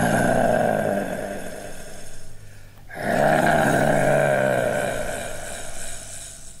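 A deep, voice-like growl held for about two and a half seconds, then repeated after a short break.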